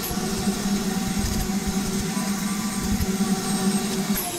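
Ridgid wet/dry shop vacuum running steadily with a constant hum, its nozzle being drawn over a carpeted car floor mat to pick up loose dirt.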